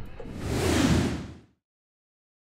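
A whoosh sound effect for a TV station logo animation, over a low music bed. It swells for about a second and then fades, cutting to silence halfway through.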